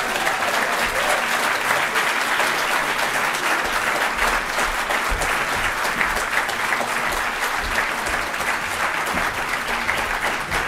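Large audience applauding steadily, a dense unbroken clapping.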